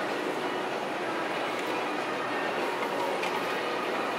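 Steady, unchanging rushing background noise with a faint hum: the ambient machinery and ventilation of a café.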